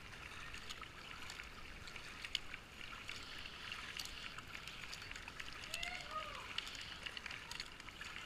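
Kayak paddling on a flowing river: steady rush of moving water with many small splashes and drips from the paddle blades. A brief arched call, like a distant shout, sounds about six seconds in.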